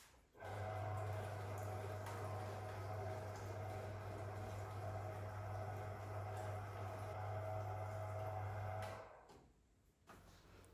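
A steady low hum with a fainter, higher steady tone above it, starting suddenly just after the start and cutting off about nine seconds in.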